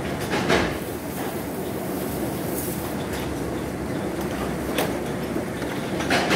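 Steady rumble of tunnel car wash machinery, with a couple of sharp clanks and a brief high hiss about halfway through.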